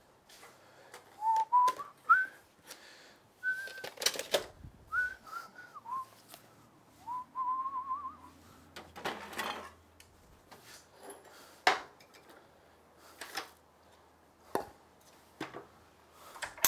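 A man whistling a few short, wandering phrases of a tune through the first half, among scattered knocks and clatters of wooden pieces and boxes being put down and moved about on a table saw.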